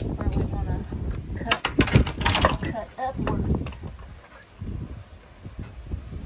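Wooden boards handled and knocked together: a short cluster of sharp knocks about two seconds in as a salvaged fence board is set against a wooden stair stringer, over a low rumble of wind on the microphone, with brief murmured voice sounds.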